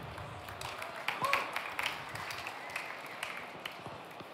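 Audience applause in a large hall: a haze of many scattered hand claps, fading in at the start. A brief voice-like call rises and falls about a second in.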